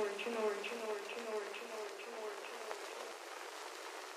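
Outro of a phonk track: a chopped vocal sample on a loop, repeating about twice a second with each repeat falling in pitch. It fades out over the first two and a half seconds, leaving a faint hiss with a few soft clicks.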